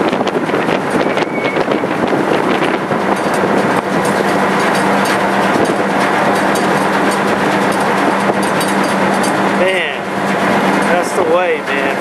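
Steady drone of a car ferry's engines under wind noise on the microphone, with a steady low hum. Voices come in briefly near the end.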